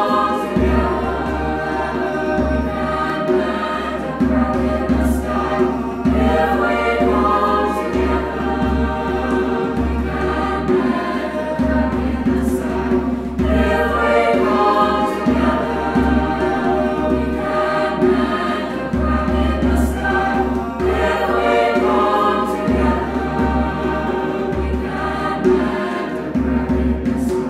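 Choral music: a choir singing over accompaniment with a low bass line.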